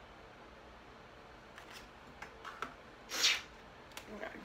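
Makeup items being handled on a desk: a few light clicks and taps about halfway through, then a short loud hissing rush about three seconds in, over quiet room tone.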